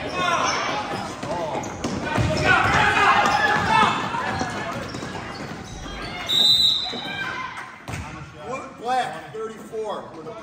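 Basketball bouncing on a gym court amid the shouting voices of players and spectators in an echoing hall, with a short, high referee's whistle about six seconds in.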